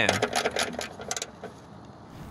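A hand ratchet clicking quickly and evenly, about eight clicks a second, as it tightens the clamp screw on the fuel filter bracket. The clicking stops a little over a second in.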